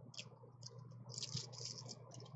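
Faint clicking and rattling of plastic nail-polish swatch sticks being handled and worked along a metal binder ring, with a denser run of clicks a little past halfway.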